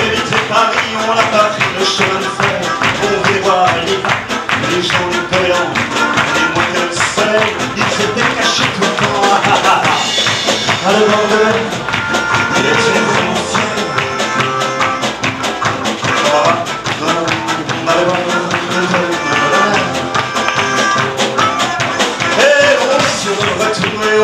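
Live acoustic pop band playing an instrumental passage: a melodica holds the melody over a rhythmically strummed nylon-string guitar and a double bass, with a brief shout of "allez, allez" near the start.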